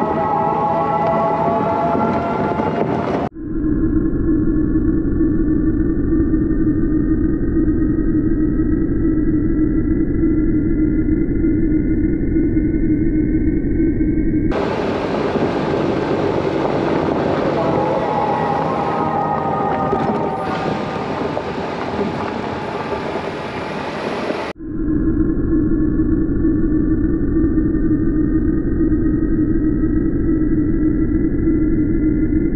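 Off-road vehicle running along a dirt track: a steady engine and drivetrain drone with a faint whine that climbs slowly. The sound breaks off abruptly a few times and resumes with a different character.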